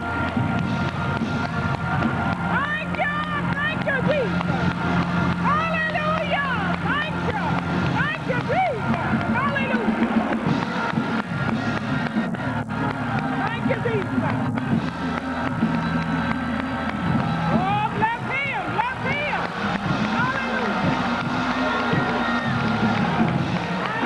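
Gospel praise-break music with held organ and bass notes, over which many voices shout and whoop without words, and hands clap quickly.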